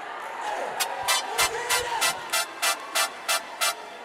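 Hands clapping together in unison, about ten sharp claps at roughly three a second, starting about a second in, over a background of crowd voices.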